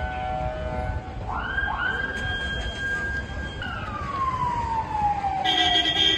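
Emergency vehicle siren: a tone rises quickly to a high pitch about a second in, holds for about two seconds, then winds slowly down. Street traffic noise runs underneath.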